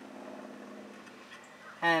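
A faint, steady, low hum with no beat or change, the kind a running motor or machine makes. A spoken word cuts in at the very end.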